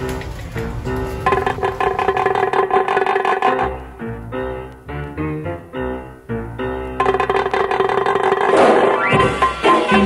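Background music with drums and a melody of short stepping notes. About four seconds in it thins to short separate notes over a bass line, then fills out again about seven seconds in.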